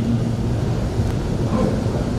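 A pause in Quran recitation: a steady noisy background with no voice, heard through the microphone, while the chanted voice has stopped.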